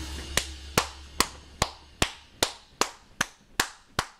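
One person clapping hands in a slow, steady rhythm, about two and a half claps a second. The last of a loud rock song fades out right at the start.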